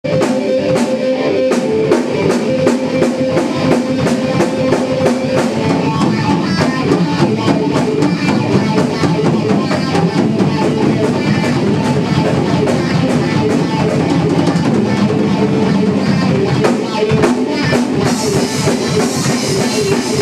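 Live rock band: a Mapex drum kit and an electric guitar playing, with a steady beat. Near the end the cymbals crash louder and fill out the sound.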